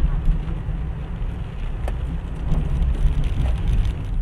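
Steady low rumble of a car driving on a wet road, heard from inside the cabin through a dashcam microphone, with a few sharp ticks.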